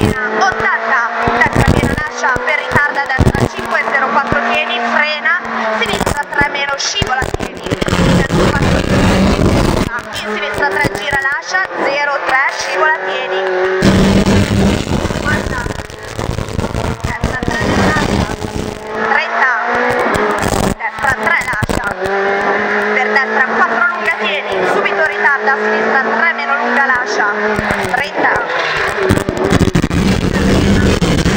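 Renault Clio Williams rally car's 2.0-litre four-cylinder engine, heard from inside the cabin, revving hard and repeatedly climbing in pitch, then dropping at lifts and gear changes as the car is driven flat out through a series of bends.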